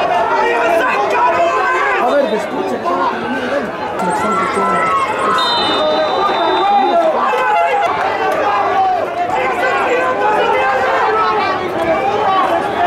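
Many voices chattering around the pitch. A referee's whistle sounds once about five and a half seconds in, a steady blast lasting about a second and a half: the final whistle ending the match.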